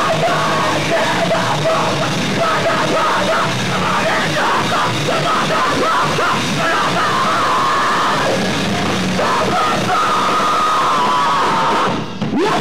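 Screamo band playing live at full volume: distorted guitars and drums under yelled vocals, heavily distorted by the camcorder's microphone. The music breaks off abruptly at the very end.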